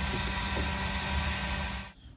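Handheld electric heat gun running: a steady rush of blown air over a low motor hum, cutting off just before the end.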